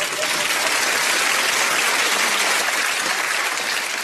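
Theatre audience applauding, a dense even clapping that eases slightly near the end.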